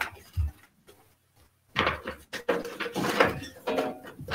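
Balls clattering and clinking against a draw bowl as they are stirred for the next draw. Two soft knocks come first, then a short lull, and the rattling starts about two seconds in.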